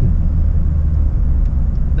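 Steady low rumble of engine and road noise inside a truck cab while driving.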